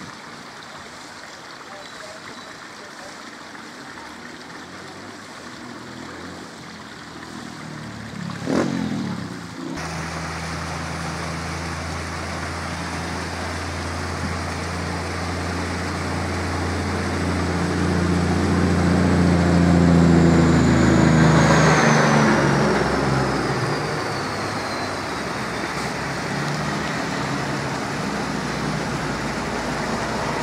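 Water of a small creek running steadily and spilling over a low concrete weir. A brief loud noise comes about eight seconds in. From about a third of the way in, a motor vehicle's engine runs close by, grows louder, then stops a little past two-thirds of the way through.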